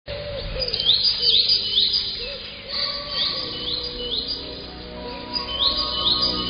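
Birdsong: a bird repeating short rising chirps in quick runs of about three, with soft sustained instrumental music coming in about halfway through.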